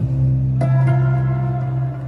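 Cellos played live through an arena sound system, holding a long low note, joined about half a second in by a higher sustained note.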